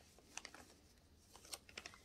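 Faint ticks and light rustles of a paper square being folded and creased by hand, a few soft clicks about half a second in and a small cluster near the end.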